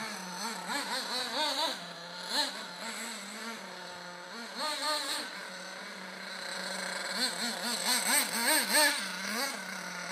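OFNA LX1 1/8-scale nitro buggy's Mach .28 nitro engine revving up and down again and again as it is driven, settling to a steady idle between bursts. The loudest, quickest revving comes near the end.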